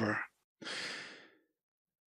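A man's sigh: one breathy exhale starting about half a second in and fading away within a second.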